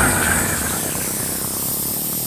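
A steady, fairly loud hiss of noise, even across the range and with no pitch to it.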